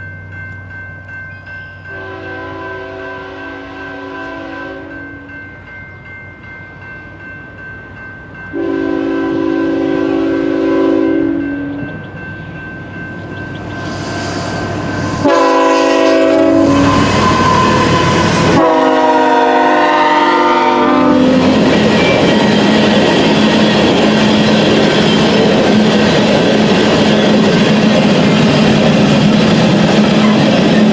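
BNSF diesel locomotive air horn sounding a series of long blasts and a short one for a grade crossing, its pitch dropping as the locomotive passes close by. The locomotives' rumble then gives way to the steady rolling clatter of coal hopper cars on the rails.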